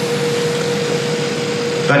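Room tone: a steady single-pitched mechanical hum over an even hiss, with a man's voice starting a word just before the end.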